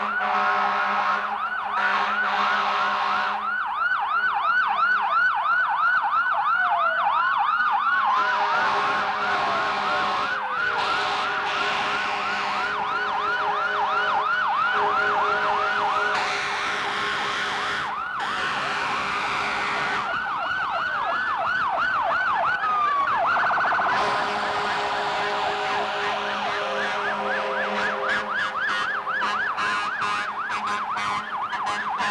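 Several fire engine and rescue truck sirens sound at once, their fast rising-and-falling wails overlapping. A few slower falling glides and steady tones run beneath them.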